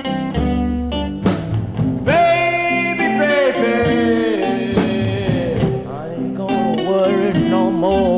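A 1955 Chicago blues band (harmonica, two electric guitars, bass and drums) playing an instrumental break with no singing. Plucked guitar notes open it, and about two seconds in a long, bending lead note enters and carries on over the accompaniment.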